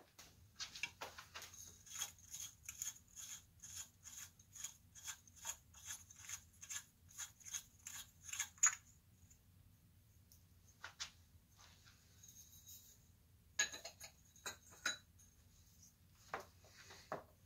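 Light clicking of glass and metal chandelier parts being worked by hand, in a quick regular run of about three clicks a second that ends with a sharper click just under nine seconds in, followed by a few scattered clinks.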